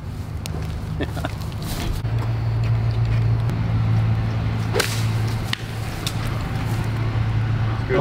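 A golf club strikes the ball off pine straw for a short bump-and-run chip, one sharp click about five seconds in. A steady low hum runs underneath.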